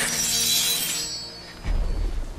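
A sudden shattering crash with a bright, ringing tail that dies away over about a second, over a film score; a low rumble comes in near the end.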